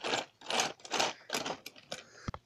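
Irregular bursts of rustling and plastic clatter, about five in two seconds, from handling as the camera and toy pieces are moved about.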